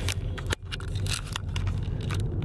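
Handling noise from a handheld camera being swung around: scattered clicks and rustles over the steady low rumble of a car cabin.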